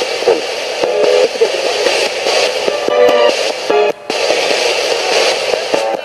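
Pocket FM radio scanning up the band as a ghost box: steady hiss broken by split-second snippets of music and voices as each station flits past, with a brief dropout about four seconds in.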